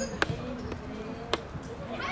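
A football being kicked: two sharp thuds about a second apart, with a fainter knock between them.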